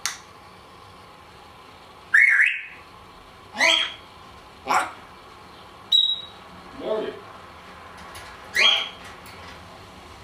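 Timneh African grey parrot chattering in about seven short separate calls, the loudest a little after two seconds in, with a brief high whistle about six seconds in.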